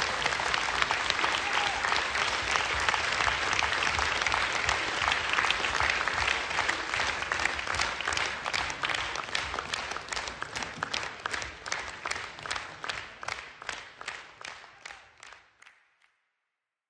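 Audience applauding. The dense applause thins into scattered individual claps and dies away near the end.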